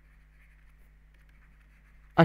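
Faint scratching and tapping of a stylus writing on a pen tablet, over a steady low hum.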